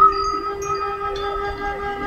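Wind chimes ringing: several long, clear notes at different pitches overlapping, with a new note joining about half a second in.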